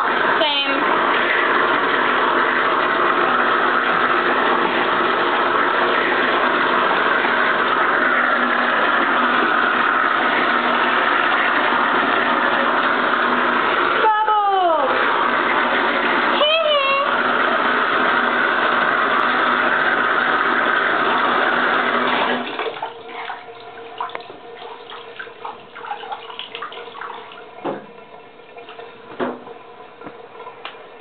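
Bathtub tap running steadily into the tub as hair is rinsed, broken twice briefly near the middle and shut off about two-thirds of the way through. After that, only quieter small rustles and handling sounds.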